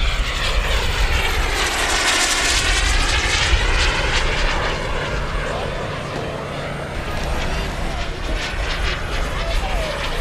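Turbine-powered radio-controlled model jet flying past: a steady jet rush that swells and shifts in pitch as it passes, loudest about two to four seconds in, then easing off.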